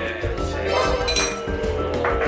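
Background music with a steady melody, and a bright glassy clink about a second in.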